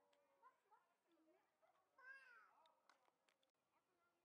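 Faint, high-pitched wordless cries from a toddler: several short calls that rise and fall in pitch, the loudest about two seconds in.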